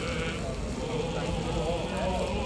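Orthodox church chant sung by voices in a walking procession. The held notes waver in pitch.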